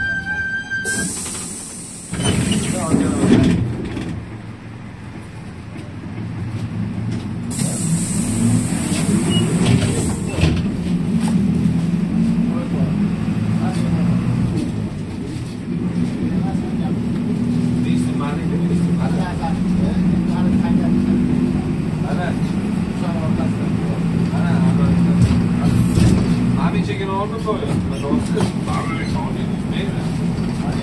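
Bus engine running and road noise heard from inside the cabin while driving, a steady low hum. Two bursts of hissing cut in, the first about a second in and the second around eight seconds in.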